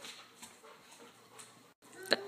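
Near silence, with a Labrador retriever's faint breathing.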